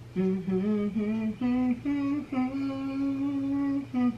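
A woman humming the melody of a Christmas song in short stepped notes, ending on one long held note.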